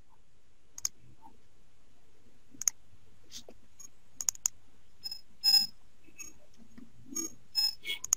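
Computer mouse clicking: about a dozen short, sharp clicks at irregular intervals, the loudest about five and a half seconds in.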